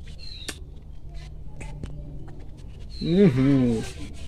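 A man chewing a grape, with scattered small clicks of chewing, then about three seconds in a drawn-out 'hmm' whose pitch rises and falls as he judges the taste. A few short, high, falling bird chirps sound, one near the start and one just before the 'hmm'.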